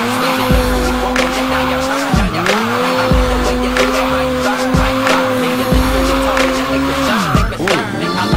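Sport bike engine held at steady high revs, dipping briefly about two seconds in and again near the end, with tyre squeal and skidding hiss as the bike spins in tight circles on the pavement. A hip-hop track with a steady beat plays over it.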